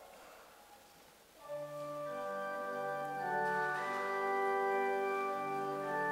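Organ playing the introduction to a hymn: after a brief quiet pause, held chords come in about a second and a half in and carry on steadily.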